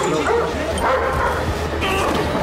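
Dogs barking over a steady low drone.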